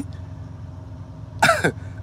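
A man briefly clears his throat near the end, over a steady low hum in the background.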